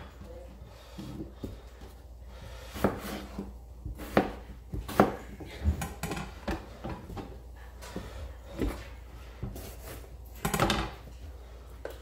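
Chef's knife cutting gold potatoes on a plastic cutting board: separate, irregular knocks of the blade on the board, with a longer clatter near the end.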